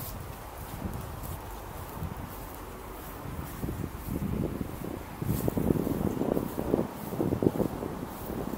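Wind buffeting the camera's microphone, rumbling and gusting louder in the second half, with footsteps on grass.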